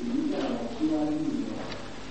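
Faint, low voice sounds in two short stretches, one after the other.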